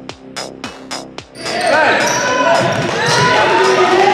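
Electronic intro music with a fast, steady beat cuts off about a second and a half in. It gives way to the loud sound of a basketball game in a gym: the ball bouncing, sneakers squeaking on the hardwood floor, and players and spectators calling out.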